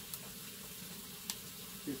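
Quiet steady background hiss with two faint sharp clicks, about a second apart, as a blender's electrical plug is handled and pushed into an extension cord's socket; the blender itself is not yet running.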